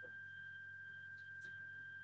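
A pause with no speech: faint room tone carrying a steady high-pitched whine and a low hum.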